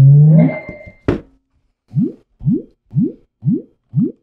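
Portable Bluetooth speaker (DBSOARS Motor Boom) switching on: a loud rising start-up tone and a click about a second in, then short rising beeps repeating about twice a second, its Bluetooth pairing signal while it searches for a device.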